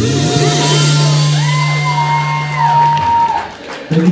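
A live band's song ending: the last low bass note is held and cuts off about three seconds in, while high, gliding whoops rise and fall over it.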